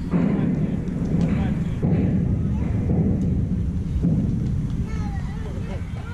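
Wind buffeting the camera's microphone outdoors: a low rumble that swells suddenly at the start, comes in gusts and eases near the end, with faint voices behind it.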